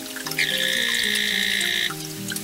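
Green-and-black poison dart frog (Dendrobates auratus) calling: one call about a second and a half long, starting about half a second in, with soft background music underneath.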